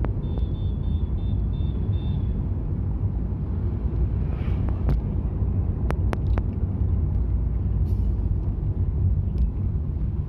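Steady low engine and road rumble heard from inside a moving car. A string of short, high beeps sounds in the first two seconds, and a few sharp clicks come around the middle.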